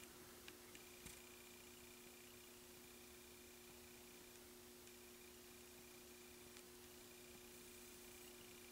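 Near silence: room tone with a faint steady electrical hum and a few faint clicks in the first second or so.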